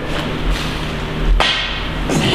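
A single sharp knock of a pool cue striking the cue ball about one and a half seconds in, over a steady background sound.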